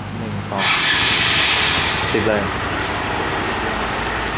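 Honda MSX125's single-cylinder four-stroke engine started from the alarm's remote-start function. It catches about half a second in and keeps running.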